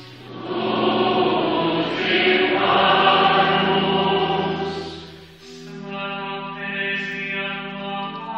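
Church choir singing sustained chords. A fuller, louder passage fills the first few seconds, then the sound dips briefly about five seconds in before held notes resume.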